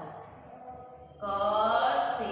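A woman's voice drawing out a single long syllable in sing-song recitation. It comes in sharply a little past halfway, after a quieter first second.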